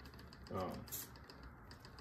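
Faint light ticks and a brief soft brush from a nitrile-gloved hand moving over a sheet of paper, around a spoken 'um'.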